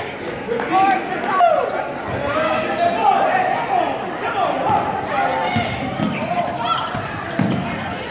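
Basketball bouncing on a hardwood gym floor amid the overlapping shouts of players and spectators, echoing in a large gym.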